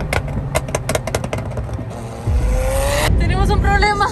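Lamborghini sports car engine revving up under acceleration, its pitch rising for about a second after a quick run of sharp cracks and pops. The sound cuts off suddenly near the end, and excited voices follow.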